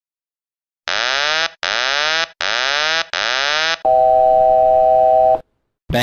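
Boeing 737-800 cockpit aural warning tones: four identical sweeping, siren-like tones in quick succession, then one steady tone of several pitches lasting about a second and a half.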